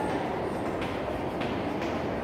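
Steady background room noise with faint scratchy strokes of chalk writing on a chalkboard.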